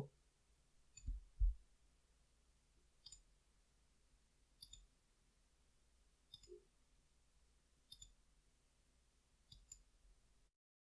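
Faint computer mouse clicks, each a quick press-and-release pair, coming about every second and a half from about three seconds in as image layers are switched. Two soft low thumps come about a second in.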